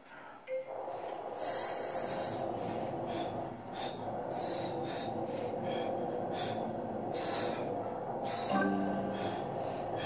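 An ARX motorised leg press starts with a beep from its countdown, then its motor runs with a steady hum as it drives the foot plate against the legs. Over the hum come forceful exhalations, one long one and then about one every second, with a short strained grunt near the end.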